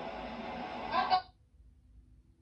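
Voices from a video playing through a TV's speakers, cutting off suddenly a little over a second in as the video is paused. After that, near silence with a faint steady hum.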